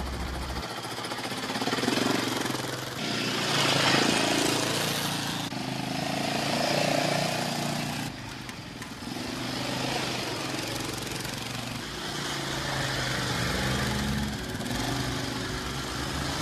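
A child making a motor noise with his voice, a continuous rough 'brrr' that swells and falls, while driving a toy quad bike by hand.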